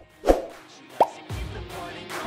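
Short pop and thump sound effects, with a quick rising blip about a second in, over quiet electronic music that comes back in after a brief gap.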